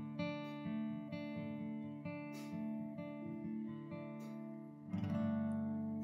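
Acoustic guitar softly strumming slow, sustained chords, with a louder new chord about five seconds in.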